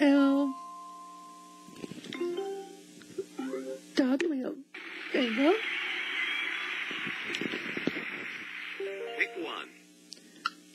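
Voices with music, and a steady rushing noise from about five seconds in until near the end.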